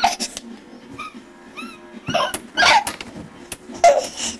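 A baby bouncing hard in a doorway jumper: a few short high squeaks, then two louder breathy squeals about halfway through.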